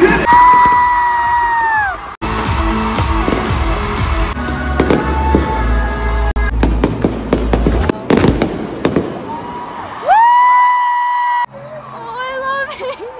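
Stadium fireworks going off in a rapid run of sharp bangs and crackles over music with a steady bass, most of them in the second half. A loud, long high held tone comes near the start and again near the end, and the sound cuts off abruptly twice.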